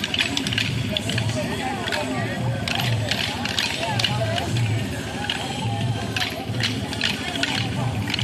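Kolatam dance sticks clacking against each other, sharp clicks in quick irregular clusters, over music with singing and a steady low beat.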